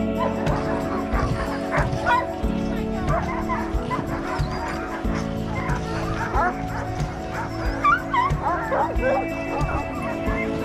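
Many sled dogs barking and yelping at once, with short high calls that slide up and down in pitch, over background music.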